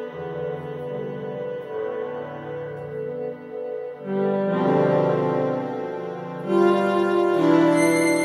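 Casio CT-640 electronic keyboard playing slow, held chords on a sustained synthesized voice, with the chord changing every couple of seconds. Near the end, louder and higher notes come in.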